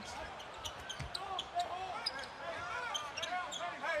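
Basketball dribbled on a hardwood court, with short sneaker squeaks from players cutting.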